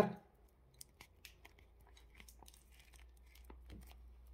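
Faint, scattered clicks and light rustling of small containers being handled and set down.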